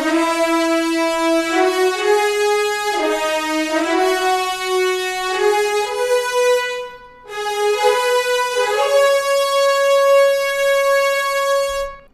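Sampled French horn section from a virtual instrument playing a slow legato line of long held notes, with a short break about seven seconds in before the line resumes.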